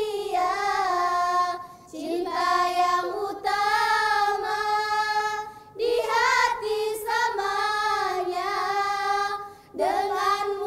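A group of girls singing a nasheed in unison, their voices on one melody line. It comes in long held phrases, with short breath breaks at about two and six seconds in and again near the end.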